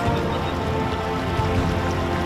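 Background music over the steady rush of flowing river water.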